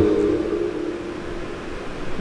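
A pause in a man's speech over a microphone: a steady hiss, with a faint single held tone fading out over the first second and a half.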